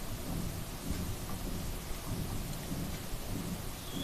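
Steady background hiss with a low, uneven rumble underneath, and no speech.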